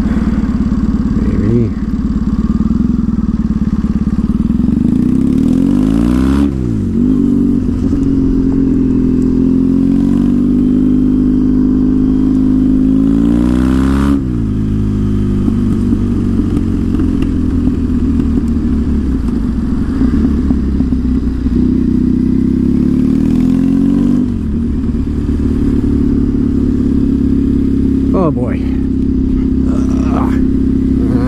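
Triumph Thruxton's parallel-twin engine pulling away and accelerating, its revs climbing and dropping with each gear change, several times.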